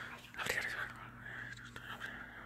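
Low, indistinct whispering voices, a hushed conferring without clear words, starting about half a second in.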